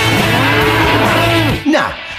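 A cow mooing: one long, drawn-out call that stops about one and a half seconds in.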